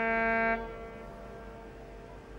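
Cruise ship's horn holding a single loud note, which stops about half a second in and then dies away over the next two seconds.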